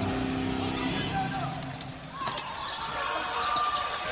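Basketball bouncing on a hardwood court during live play, with repeated ball strikes in the second half over arena crowd noise.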